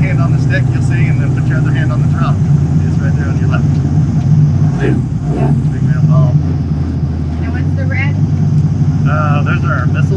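Extra 330LX's six-cylinder Lycoming engine and propeller running at low taxi power, a steady low drone heard from inside the closed cockpit.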